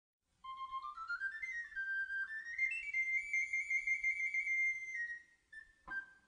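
Flabiol, the small Catalan pipe, playing a solo melody that climbs in steps to a long high trill and stops about five seconds in. This is the solo introduction of a sardana.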